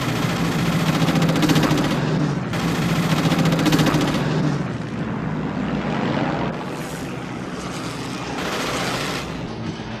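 Film soundtrack of several propeller fighter planes in flight: a steady engine drone that shifts slowly in pitch. A fast rattle, like machine-gun fire, runs over it through the first four seconds or so.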